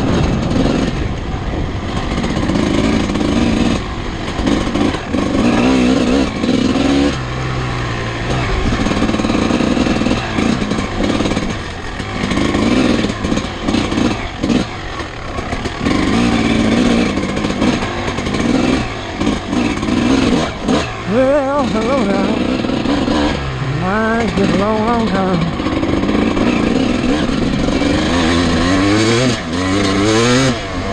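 Dirt bike engine ridden hard on a trail, revving up and down as the throttle opens and closes, with repeated rising and falling sweeps in pitch.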